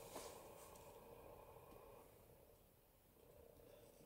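Near silence: room tone, with one faint click shortly after the start.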